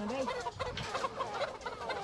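A flock of hens clucking and chattering, many short calls overlapping, as they settle onto their roosts for the night.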